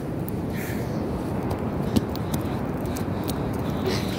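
Steady rumble of ocean surf and wind on the beach, with a few sharp clicks from the phone being handled.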